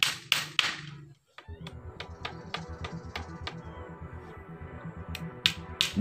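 Hammer driving nails into hardwood offcuts: four sharp strikes in the first second, then lighter taps and a few more strikes near the end, over background music.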